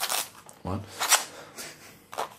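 Knife blade slicing through magazine paper: two short, sharp cutting strokes, one at the start and another about a second in.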